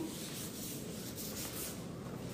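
Faint steady hiss with no distinct events: room tone picked up by a handheld phone's microphone during a pause in speech.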